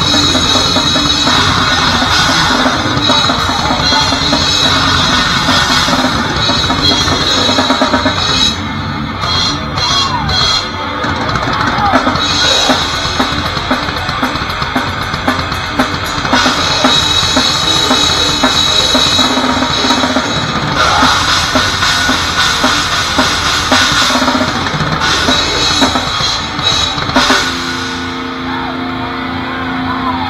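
Grindcore band playing live and loud: a drum kit pounding with fast bass drum and crashing cymbals under guitars, in stop-start sections. Near the end the song breaks off, leaving a steady held tone ringing from the amps.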